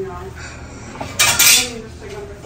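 A short, loud clinking rattle a little over a second in, over faint room noise.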